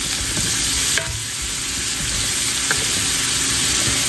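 Diced potatoes and melting butter sizzling steadily in a cast-iron skillet, with a few light scrapes and taps of a wooden spatula stirring them.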